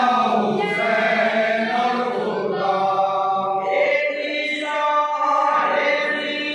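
A group of men chanting a noha, a Shia lament, in unaccompanied unison, led by a reciter at a microphone, with long held notes.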